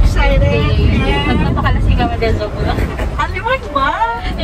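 Women's voices chatting inside a moving car, over the steady low rumble of the car's cabin.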